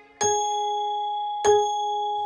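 A clock bell strikes twice, the clock striking two o'clock. The first strike comes about a fifth of a second in and the second about a second and a half in. Each strike rings on with a steady, slowly fading tone.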